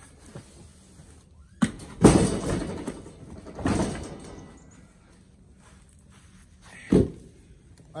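Oak firewood blocks being dragged across a pickup truck bed with a Fiskars hookaroon and dropped out: heavy wooden thuds about one and a half and two seconds in, each of the louder ones trailing into about a second of scraping, another thud near the middle, and a single sharp knock about seven seconds in.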